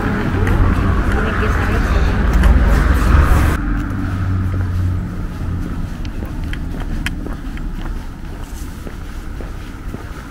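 Street ambience: a loud low traffic rumble with voices around, which cuts off abruptly about three and a half seconds in. A quieter outdoor background with a few faint ticks follows.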